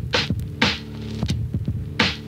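Funky drum loop: held low bass notes under a repeating pattern of sharp snare-like hits, a couple to a few a second.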